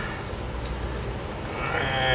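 Crickets chirping in one steady high-pitched trill, over a low, steady hum.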